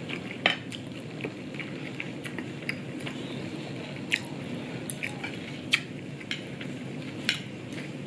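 Wooden chopsticks tapping and clicking on a ceramic plate and sauce bowl while eating, in scattered light clicks about a second apart, with soft chewing.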